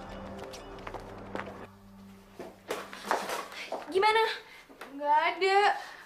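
Mostly speech: a woman's high-pitched, excited voice calls out twice in the last two seconds. Faint steady background music runs underneath.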